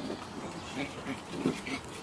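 Five-week-old Samoyed puppies making several short vocal sounds while they play, the loudest about one and a half seconds in.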